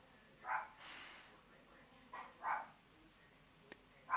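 A dog barking faintly a few times in short single barks, with a quick pair about two seconds in.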